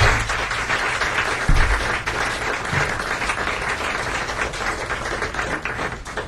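Audience applauding, a dense patter of many hands clapping after a tune ends, with a low thump about one and a half seconds in.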